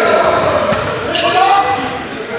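Basketball game in a gymnasium: a ball bouncing on the hardwood court, with players' voices echoing in the hall.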